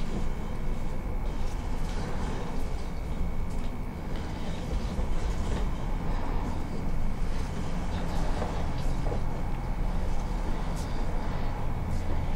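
Sewer inspection camera's push cable being pulled back through the pipe and onto its reel, a steady rumbling noise with a faint high whine running through it.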